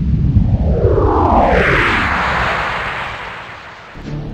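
A whoosh sound effect: a deep rumble with a hiss that sweeps upward in pitch, then fades away over the last couple of seconds.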